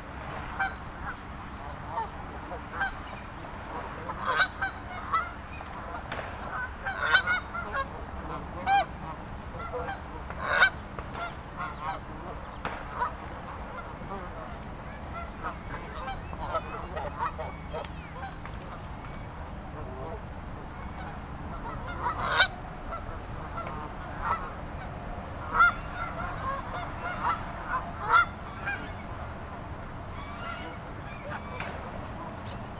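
A flock of Canada geese honking: many short calls overlapping throughout, with a handful of louder honks standing out every few seconds.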